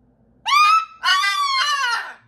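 Umbrella cockatoo calling loudly, two squawks: a short one about half a second in, then a longer one from about a second in that wavers in pitch.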